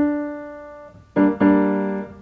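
Piano: a single note, the D at the top of a G minor triad, struck and left to fade, then a little over a second in the full G minor chord (G, B-flat, D) struck and held. This is the minor chord being demonstrated: the darker, sadder chord.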